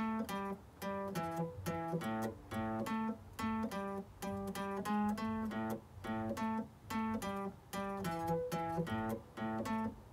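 Electric guitar playing a blues shuffle riff in A: the open A string hit twice, then fretted notes on the D and A strings and a triplet build-up, repeating in an even shuffle rhythm.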